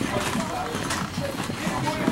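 Wire shopping cart being pushed along a tiled supermarket floor, its wheels rattling and knocking unevenly, with voices in the background.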